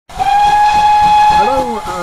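A steam locomotive whistle sounding one steady high note for about a second and a half over a hiss of steam, starting suddenly and then fading.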